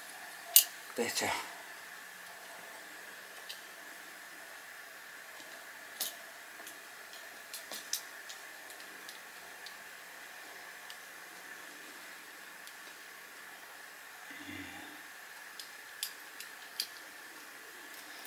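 Faint steady hum of a motorized display turntable running, with a few light clicks scattered through.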